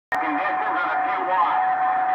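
Garbled voice of a distant station coming in over an HR2510 radio's speaker on CB channel 11 (27.085 MHz), buried in static, with a steady whistle tone under it.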